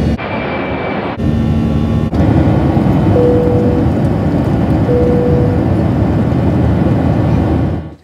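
Boeing 737-700 cabin noise in flight: the steady roar of its CFM56-7B engines and the airflow, in short clips cut together. Two brief steady tones sound in the middle, and the roar cuts off abruptly just before the end.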